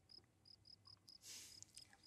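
Faint cricket chirping: a steady run of short, high chirps, about five a second. A brief soft noise comes about one and a half seconds in.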